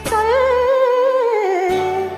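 Tamil film song sung to a karaoke backing track: a voice holds one long note with a slow vibrato that slides down in pitch, while the backing's bass drops out for about a second in the middle.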